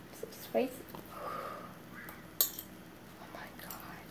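Cooked noodles being pulled by hand from a bowl and dropped onto a plate: soft, low handling noise, with a single sharp clink of dish against dish about two and a half seconds in. A few brief murmured voice sounds come in between.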